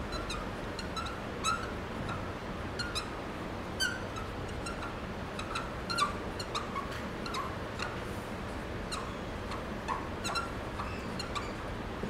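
Writing on a board: irregular short squeaks and ticks as the strokes are drawn, over steady room noise.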